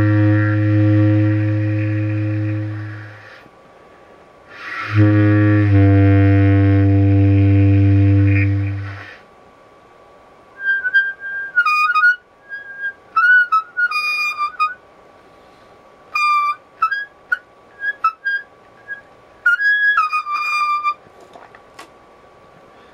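Improvised reed woodwind playing: two long, low held notes of a few seconds each, a short pause between them, then after a longer gap a string of short, high whistle-like notes with quick slides in pitch. A faint steady high tone sits underneath.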